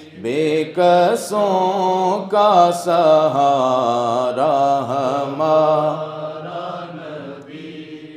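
A man chanting a naat solo and unaccompanied, drawing out long wavering melismatic notes into a microphone; the phrase tapers off quieter near the end.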